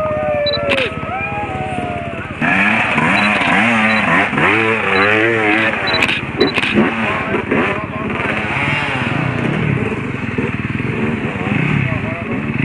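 Dirt bike engine revving up and down, its pitch rising and falling, as the bike works down a steep rutted dirt chute. Voices can be heard alongside it.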